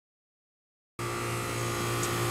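Silence for about the first second, then a steady electrical hum with a strong low tone cuts in suddenly from a running air-conditioning condensing unit.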